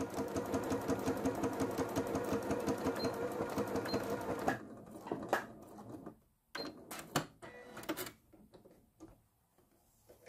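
Electric sewing machine running a straight seam through a lining fabric in a fast, even stitching rhythm, then stopping a little over four seconds in. After it stops come a few sharp clicks and light handling knocks as the work is taken out from under the presser foot.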